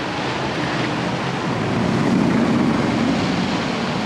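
Gerstlauer Infinity Coaster train running along its steel track, the noise swelling about two seconds in as the train draws nearer.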